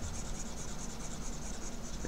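Stylus of a Wacom Bamboo CTL-470 pen tablet rubbing steadily across the tablet's surface while erasing strokes.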